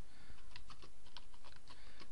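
Computer keyboard typing: a quick, uneven run of keystrokes.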